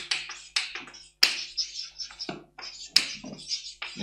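Chalk writing on a blackboard: a run of short taps and scratchy strokes, with two sharper taps about a second in and again near three seconds.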